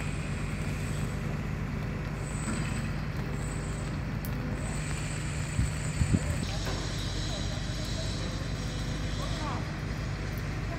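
Heavy diesel engine of a large mobile crane running steadily while it holds a concrete bridge beam aloft. A few short knocks come about six seconds in.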